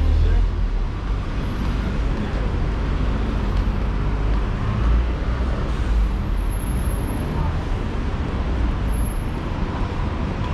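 Busy city street ambience: a steady low rumble of road traffic mixed with indistinct chatter of passersby.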